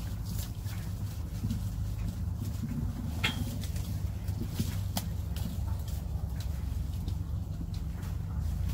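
Gala apples being picked by hand: irregular small snaps and clicks of stems breaking off, leaves and branches rustling, and fruit going into a canvas picking bag, over a steady low rumble.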